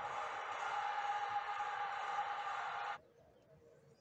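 Steady hiss-like broadcast sound from a television's speaker, the tuned satellite channel's audio, cutting off suddenly about three seconds in as the receiver switches channel.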